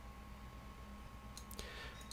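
Two faint clicks of a computer mouse about one and a half seconds in, over quiet room tone with a faint steady electrical hum.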